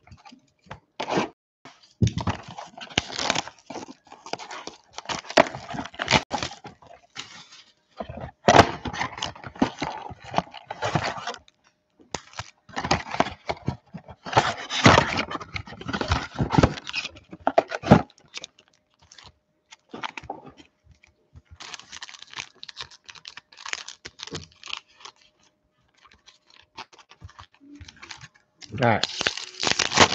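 A trading-card box being cut open with a utility knife and its cardboard and plastic wrap torn away, in irregular ripping and scraping strokes. The strokes are loudest over the first half and sparser and quieter later.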